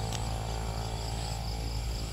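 Insects chirping steadily in a high, pulsing drone, over a low steady hum.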